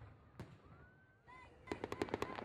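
Faint fireworks: a single bang about half a second in, a rising whistle, then a fast run of crackling pops near the end.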